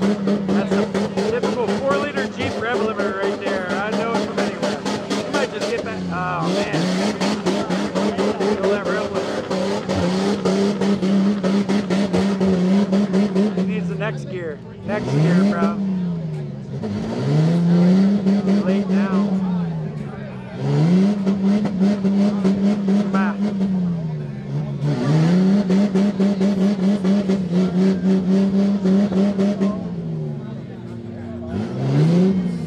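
A mud-bogging Jeep's engine held at high revs while the Jeep sits stuck deep in a mud pit. The revs drop and climb back once early and then four times in the second half, as the throttle is let off and pressed again.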